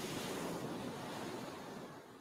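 A single ocean wave washing up on a beach, heard as a hiss of surf that is loudest at the start and fades away over about two seconds.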